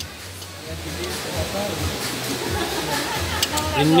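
Indistinct background voices and faint music over a low steady hum, with a couple of light clinks near the end as a metal spoon is set down in a china plate.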